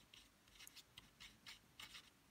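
Faint scratching of a marker pen on paper as a word is handwritten, in a quick series of short strokes.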